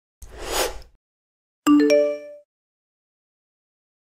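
Logo sting sound effect: a short rising whoosh, then about a second later a bright chime of several ringing tones that dies away within a second.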